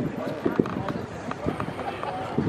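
Background chatter of people's voices, not clear enough to make out words, with a few light clicks and knocks.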